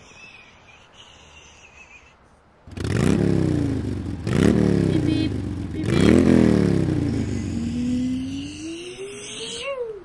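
A person's voice imitating a revving vehicle engine for a toy car: three loud rising-and-falling 'vroom' sounds starting about three seconds in, then one long rising one toward the end.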